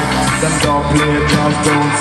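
Live band playing an upbeat dancehall-style groove with a steady beat, loud through the PA and recorded from within the crowd.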